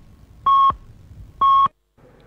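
Radio time-signal pips marking the hour: two short, identical beeps about a second apart, each a steady tone of about a quarter second.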